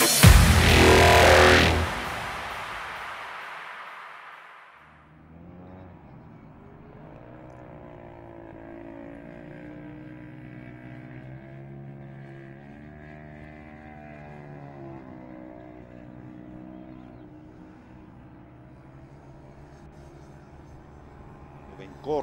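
Heavy rock intro music cuts back and fades out in the first few seconds. Then comes the faint sound of distant engines running steadily, their pitch rising and falling slowly.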